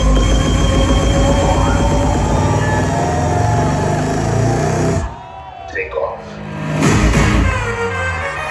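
Loud concert music with a heavy bass beat over an outdoor stage PA system, recorded from within the audience. About five seconds in the music drops out suddenly, then swells back up loud about two seconds later.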